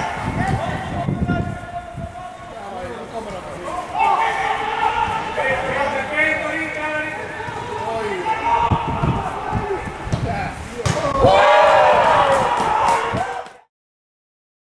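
Footballers shouting and calling to each other on an open pitch, with scattered thuds of the ball being kicked. The loudest shouting comes near the end, then the sound cuts off abruptly.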